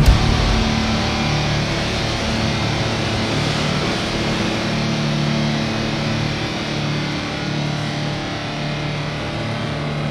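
Sea waves washing and breaking over shoreline rocks, a steady rush of surf, with a low droning hum underneath.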